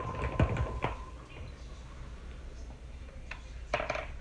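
A few light clicks and taps of hands handling a small plastic moisturizer tube: two in the first second and a quick cluster near the end.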